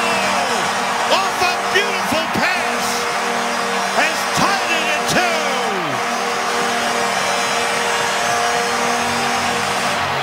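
Arena crowd cheering and whistling an ice hockey home goal, over a long steady goal horn that fades near the end.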